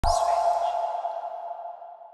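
Channel ident sound effect: a sudden hit with a quick whoosh, then a single ringing tone that fades away over about two seconds.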